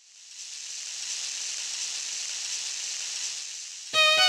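Steady hiss of an animated logo intro's sound effect, swelling in over the first second and stopping abruptly as music begins at the very end.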